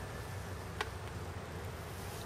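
Faint, steady low hum with a single small click about a second in.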